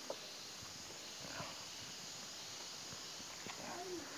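A sharp wooden knock and a few fainter knocks as a carved teak nameplate is set down and settled on a small wooden stand, over quiet outdoor background hiss.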